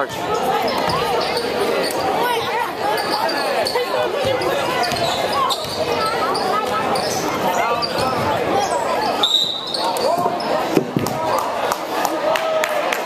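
Basketball being dribbled on a hardwood gym floor during play, under steady chatter of spectators' voices. A brief high tone sounds about nine seconds in.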